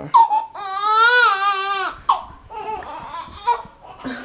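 Newborn baby crying: one long high-pitched wail about half a second in, a short cry just after two seconds, then quieter fussing.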